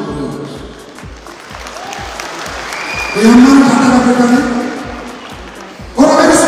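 Music with a steady beat over a hall sound system, with audience applause, and a long held voice through the microphone about three seconds in.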